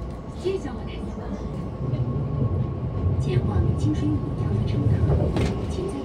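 Cabin running noise of a Keihan limited express train: a low rumble from the moving train that grows louder about two seconds in, with a thin steady high tone above it.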